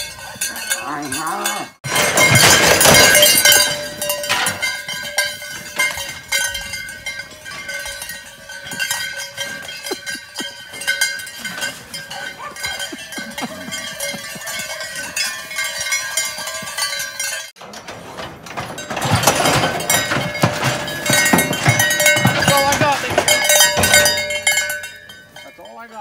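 Cowbells worn by several cattle clanking and ringing irregularly as the animals run and walk about. The ringing swells in two louder stretches and cuts off abruptly twice.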